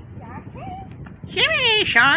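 A high-pitched cartoon character's voice played through laptop speakers: faint at first, then loud with a strongly wavering, sweeping pitch from about one and a half seconds in.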